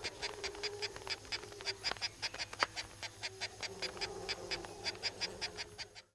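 Marsh ambience: a rapid, even train of short, high chirps, about seven a second, over a faint steady low hum. It cuts off suddenly at the end.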